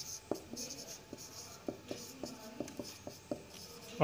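Marker pen writing on a whiteboard: a run of short, faint taps and squeaky strokes as the letters are drawn.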